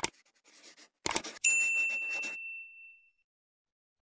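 Sound effects of an animated subscribe-button intro: a sharp mouse click, a quick patter of soft strokes as the logo is drawn, another click, then a single notification-bell ding that rings out and fades over about a second and a half.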